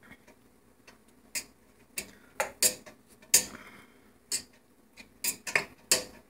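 Scattered light clicks and taps from a stainless steel pot, unevenly spaced, as cooked rice is mixed in it by hand, with a brief soft rustle of the rice a little past the middle.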